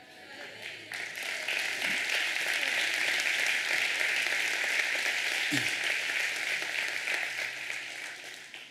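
Congregation applauding, starting about a second in and dying away near the end.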